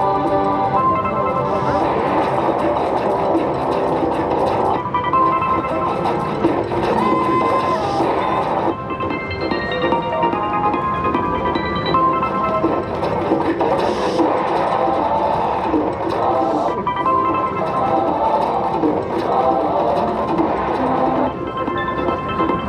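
Video slot machine playing its bonus-round music, a continuous electronic melody with chiming win tones as the free spins run and pay out.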